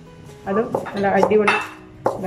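A few sharp clinks of kitchen utensils against a dish during food preparation, over soft background music, with a voice in the middle of the stretch.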